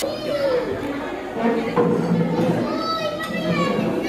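A young child talking and calling out in a high voice, with other people's chatter in a large room.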